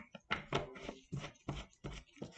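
Irregular light clicks and taps, about three a second, from a plastic epoxy resin jug being handled on a tabletop while part A is measured out.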